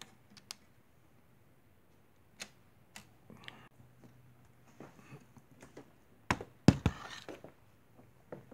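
Small sharp clicks from hands working a flat flex cable on a TV's timing control board, then handling noise. A few dull thumps with some rustling about six to seven seconds in are the loudest sounds.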